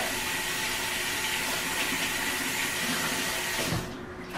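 Water running from a tap in a steady hiss while hands are washed, shut off abruptly shortly before the end.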